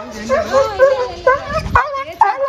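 Rottweiler whining and yipping, a run of short cries that rise and fall in pitch.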